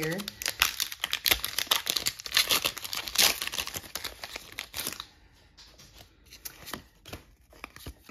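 Foil Pokémon booster pack wrapper crinkling and tearing as it is opened: dense crackling for about five seconds, then it goes much quieter, with a few light clicks of handling.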